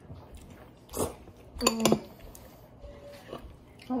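Quiet eating sounds from chopsticks and a ceramic bowl, with a sharp click about a second in and a short, high pitched squeak just after.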